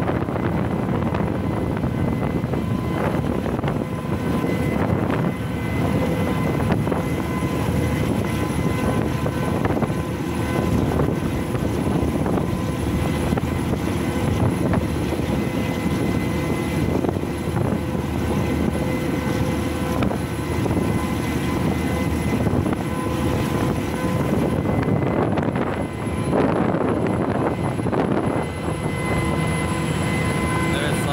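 Steady drone of a small ro-ro vessel's twin Yuchai marine diesel engines (2×540 hp) running under way, with faint steady whining tones over it, mixed with the rush of the bow wave along the hull.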